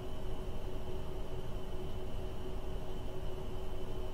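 Steady background hum with a few constant pitches over a low rumble, unchanging throughout: room noise.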